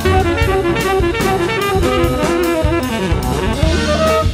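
Contemporary jazz quartet playing: a tenor saxophone carries the melody over double bass and drum kit, with steady cymbal strokes about three a second.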